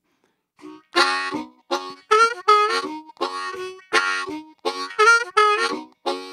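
Harmonica playing a lively tune in short, rhythmic chord phrases, starting about a second in after a brief silence.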